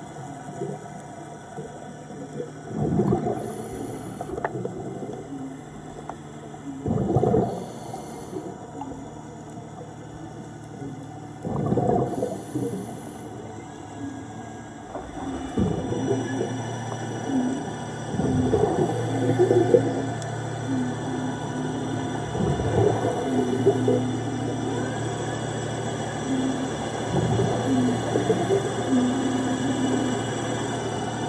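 Scuba diver's exhaled regulator bubbles, a crackling burst about every four seconds. About halfway through, a steady low hum with a short repeating higher tone joins in: the Atlantis tourist submarine's thrusters running close by.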